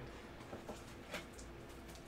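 Faint rustles and a few light taps of cardboard and paper being handled as a box flap is lifted and a paper insert card is pulled out.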